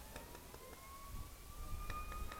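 A faint high whine rising slowly and smoothly in pitch, then holding steady near the end, over faint crowd chatter.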